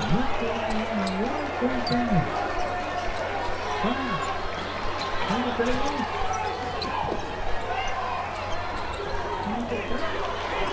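Basketball dribbled on a gym court floor, with people's voices in the hall.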